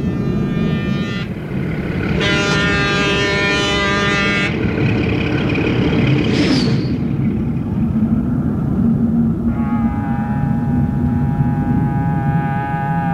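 Horn blasts over a steady low rumble. A short blast, a longer one about two seconds in, a brief rising squeal past the middle, and a long held horn starting near the end.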